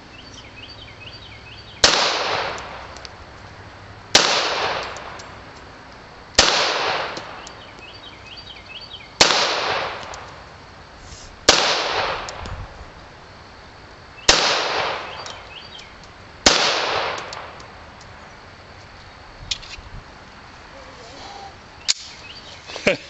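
Ballester Molina .45 ACP semi-automatic pistol fired seven times at a slow, even pace, about two to three seconds between shots, each shot trailing off in an echo lasting about a second.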